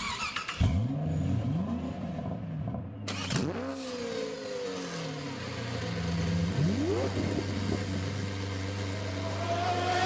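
Racing car engine accelerating hard through the gears, its pitch climbing in three rising sweeps over a steady low drone.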